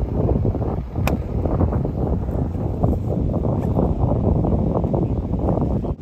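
Wind buffeting a phone microphone with a steady low rumble, broken about a second in by one sharp strike: a golf iron hitting the ball on a full approach shot.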